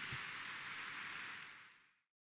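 Audience applause, faint and even, fading to silence about one and a half seconds in.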